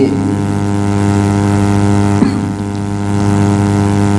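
Loud, steady electrical mains hum with many evenly spaced overtones, unchanging throughout, with a single short click about two seconds in.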